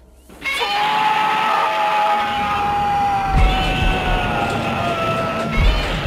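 A man's long drawn-out scream, held for about five seconds and slowly falling in pitch, over music with heavy low thumps about three and a half seconds in and again near the end.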